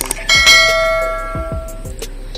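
A single notification-bell chime sound effect from a subscribe-button overlay: one ding about a third of a second in that rings on and fades away over about a second and a half.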